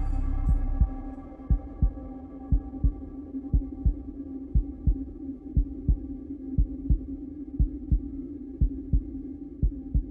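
A low heartbeat-like pulse, a double thump about once a second, over a steady humming drone.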